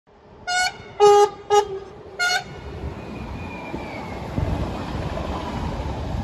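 Train horn sounding four short blasts on two alternating pitches, followed by the rising rumble of a train rolling on the rails with a faint falling whine.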